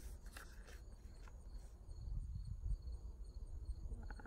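Insects chirping steadily and faintly in the background over a low rumble. A few faint rustles of a paper card being handled come in the first second or so.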